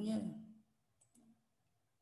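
A faint, quick computer-mouse click about a second in, as an on-screen dialog button is pressed.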